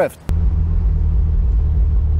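Toyota Supra's 2JZ-GTE engine idling, a steady low rumble heard from inside the car's cabin, starting abruptly a moment in.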